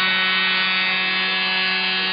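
Steady electrical buzz: a constant hum with many even overtones that runs unchanged through the moment and also sits under the commentary.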